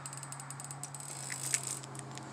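Handling noise from the camera being moved: an irregular run of small clicks and rustles, the loudest about one and a half seconds in, over a steady low hum.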